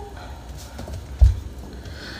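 Handling noise from a phone held close to a wood floor and moved around: a low rumble with a few faint taps, and one dull thump about a second in.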